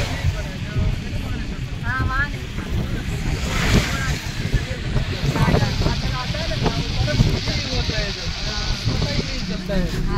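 Steady low road and engine rumble inside a moving vehicle's cabin, with passengers talking faintly now and then.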